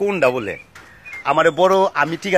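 A man's voice in drawn-out, wavering syllables: two stretches with a short pause in the middle.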